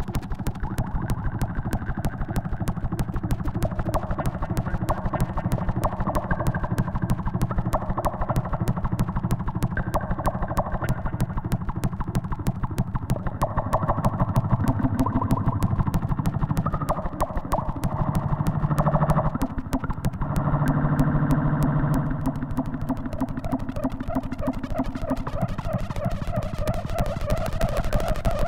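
No-input mixing feedback, a mixing desk with its outputs routed back into its own inputs, making a dense, rapidly pulsing electronic buzz over a low drone. Its mid-range tones shift in steps, and it swells louder past the middle with a brief dip before easing back.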